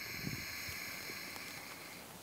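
Ujjayi pranayama breath: one long, steady inhale with the mouth closed, drawn over a narrowed back of the throat, making a soft hiss that eases a little toward the end.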